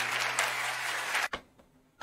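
Large auditorium audience applauding over a low steady hum, cut off abruptly about a second and a quarter in.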